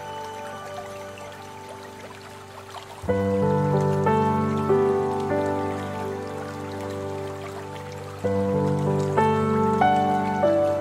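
Calm instrumental background music of slow, sustained chords, growing louder as new chords come in about three seconds in and again near the end, over a soft steady splashing of water.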